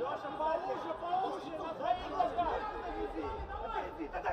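Several voices calling out and talking over one another in a large arena, with no single clear speaker.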